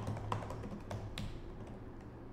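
Typing on a computer keyboard: a run of irregular key clicks, spaced unevenly and thinning out in the second half.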